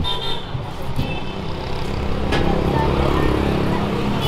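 Street traffic with a motor vehicle's engine running close by, a steady low hum. Short horn toots sound twice in the first second and a half.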